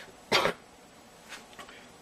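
A man clears his throat once with a single short cough, followed by quiet room tone.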